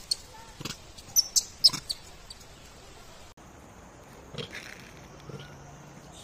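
Rhesus macaques giving short, high-pitched squeaks, several in quick succession in the first two seconds, then a few fainter calls after a cut.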